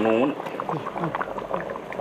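A pot of curry boiling hard, with its thick broth bubbling and popping in quick, irregular little bursts. A voice speaks briefly at the start.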